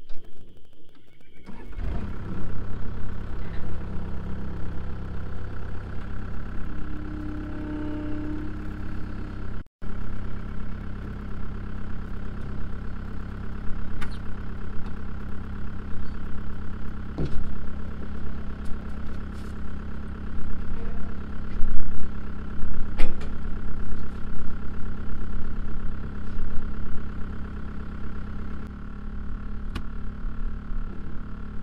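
Cat 262C skid steer's diesel engine starts about a second and a half in, then runs steadily, with a few knocks over it. The sound cuts out for an instant near ten seconds.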